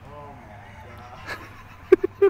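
A man's voice speaking fairly quietly and indistinctly, then a short, sharp, loud sound just before the end.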